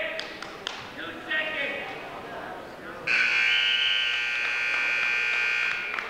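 Scoreboard timer buzzer sounding one loud, steady blast of about three seconds, starting halfway through and cutting off suddenly, marking the end of a wrestling period. Shouting voices come before it.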